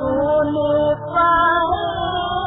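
A woman singing a 1947 Hindi film song, holding wavering notes, in an old recording with a muffled, narrow sound. There is a short break about halfway through, then a new phrase begins.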